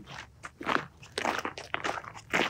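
Footsteps crunching on a gravel road, about two steps a second.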